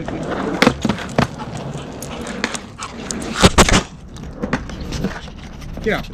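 Skateboard rolling on a concrete driveway: a steady wheel rumble broken by sharp clacks of the board, the loudest a heavy clatter a little past the middle.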